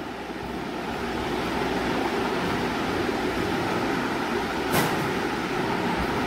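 Steady rushing background noise that swells slightly at first, with one brief faint knock about three-quarters of the way through.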